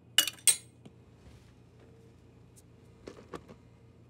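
Two sharp clinks of metal measuring cups against kitchenware within the first half second, then a few faint taps near the end.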